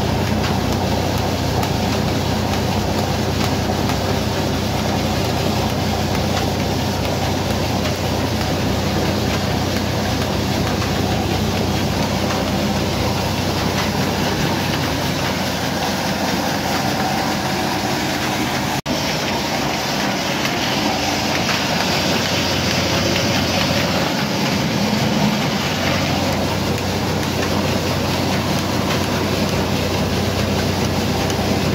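Belt-driven pulverizer flour mill (atta chakki) running steadily while grinding grain into flour: a constant low hum over a continuous rush, broken for an instant about two-thirds of the way through.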